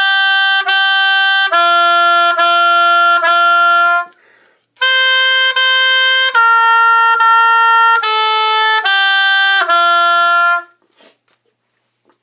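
An oboe playing a slow beginner exercise in separately tongued, held notes: G, G, F, F, F, then, after a short rest, C, C, B-flat, B-flat, A, G, F. The last note stops a little before the end, leaving silence.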